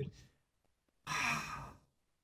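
A man sighing: one breathy exhale about a second in, lasting under a second.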